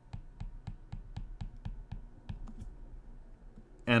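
Stylus clicking and tapping on a tablet screen during handwriting: a run of light, short clicks, about three a second.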